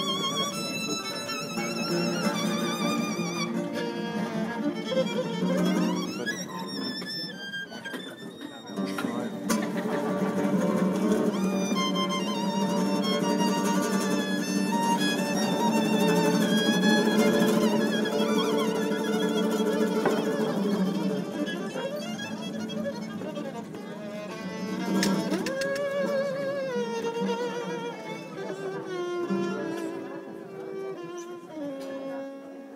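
Gypsy-jazz (manouche) acoustic ensemble playing: a violin carries a melody with vibrato over several acoustic guitars strumming the rhythm.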